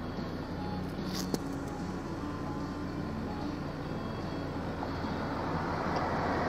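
Steady low hum of a motor vehicle running, with a faint click about a second in.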